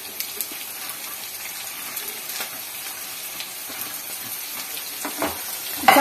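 Sliced onions and green chillies sizzling steadily in hot oil in a pan, with a few faint clicks as they are stirred with a wooden spatula.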